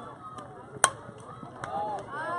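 A single sharp, ringing crack a little under a second in: a softball bat striking a pitched ball. Distant voices of players and spectators can be heard underneath.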